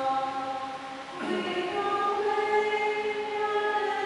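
Church choir singing a slow hymn in long held notes, with a new phrase starting a little over a second in.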